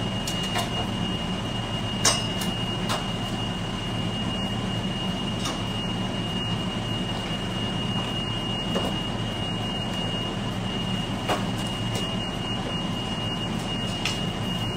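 Steady whirring hum of a kitchen appliance running, with a thin high steady tone over it and a few faint clicks.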